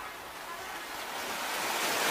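Steady hiss of sea waves washing on the shore, growing slowly louder.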